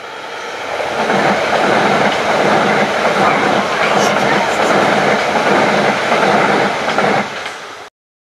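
Class 375 Electrostar electric multiple unit passing close by at speed: wheel-on-rail noise builds over the first second, holds loud for about six seconds, eases near the end and then cuts off suddenly.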